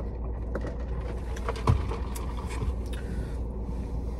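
Steady low rumble of a car idling, heard inside the cabin, with faint small clicks and mouth sounds of sipping a soda through a straw and chewing, and a soft thump partway through.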